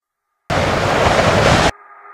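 A loud burst of hissing noise, about a second long, that starts and cuts off abruptly out of total silence. It is an edited magic sound effect marking the wand being pressed. Faint sustained music tones begin as it ends.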